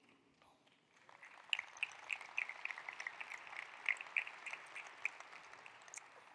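Audience applause: quiet, dense clapping that starts about a second in and fades away near the end.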